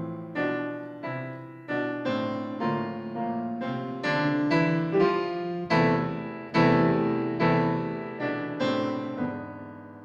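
Grand piano playing a prelude: a series of chords, each struck and left to ring out. The playing grows louder past the middle, then softens and fades near the end.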